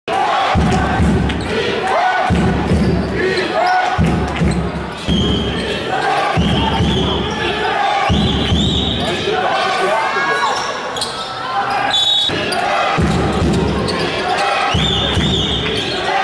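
Live basketball game sound in a large sports hall: a ball bouncing on the court, sneakers squeaking in short high chirps, and voices of players and spectators in the hall's echo.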